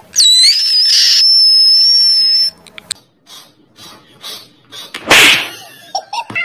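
A loud, high-pitched whistle-like tone lasting about two and a half seconds; it drops in pitch at the start, holds steady, then cuts off. Faint scattered ticks follow, and a short, loud burst of noise comes about five seconds in.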